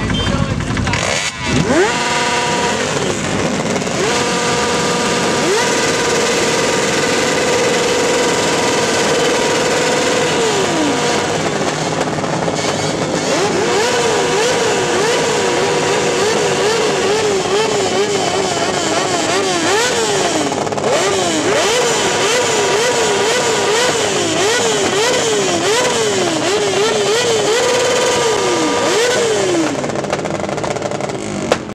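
Stationary motorcycle engine revved hard and loud: held at high revs for several seconds, then blipped up and down again and again in quick succession.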